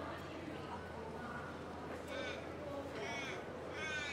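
A crow cawing three times in the second half, short harsh calls about a second apart, over faint distant voices.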